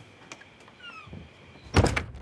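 A door: a couple of light clicks, a short squeak on the hinges about a second in, then the door shuts with a loud thud near the end.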